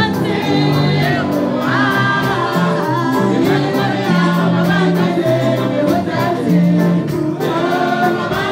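Live gospel praise music: several singers on handheld microphones singing together over a band of drums, bass guitar and keyboard, with a steady beat.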